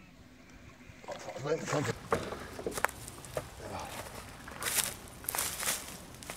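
A carp thrashing in a landing net at the surface, throwing up water in irregular splashes, loudest in a long burst near the end, with voices alongside.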